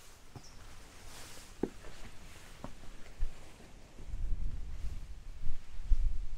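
Footsteps and scuffs on bare rock during a scramble, with a few sharp taps in the first half, then a low rumbling on the microphone from about four seconds in.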